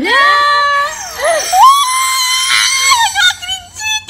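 Children screaming in excitement: a long, high-pitched shriek that rises over the first second, is held steady, and tails off shortly before the end.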